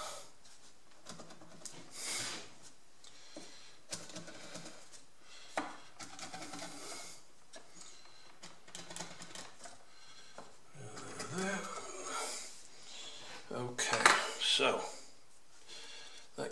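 Light knocks, clicks and clatter of balsa wood strips and small tools being handled and set down on a workbench, with a pencil marking the wood; a louder clatter near the end.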